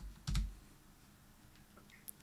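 A short keystroke on a computer keyboard about a third of a second in, with a fainter tap just before it: the Enter key pressed to run a pasted terminal command.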